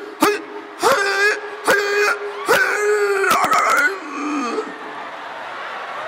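A man's voice wailing and yelping into a microphone in rising and falling cries over a steady held hum, a mock fraternity call. It stops about four seconds in.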